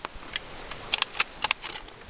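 A piece of aluminum drink can being scraped to remove its coating: a series of short, irregular scratchy clicks.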